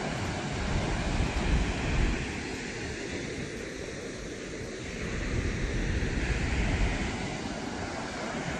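Water rushing through the open spillway gates of the Ballard Locks dam and churning in the basin below, a steady roar, with wind gusting on the microphone.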